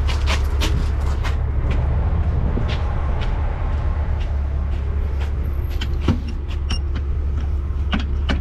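Diesel truck engine idling steadily, with irregular footsteps crunching on gravel and dirt and one sharp knock about six seconds in.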